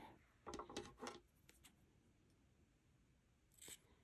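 Mostly near silence, broken by a few faint, short handling sounds about half a second to a second in and another near the end, as small scissors are brought to trim a yarn tail.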